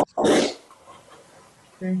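A short breathy burst of voice over a video-call line, about a quarter of a second in, followed by about a second of faint hiss from an open microphone. A voice says "okay" near the end.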